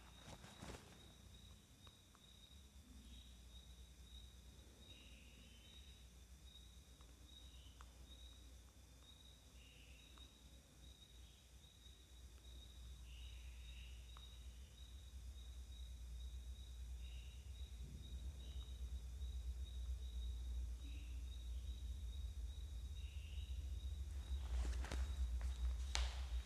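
Faint background noise: a low rumble that grows steadily louder over the second half, a thin steady high whine, and short faint high chirps every second or two.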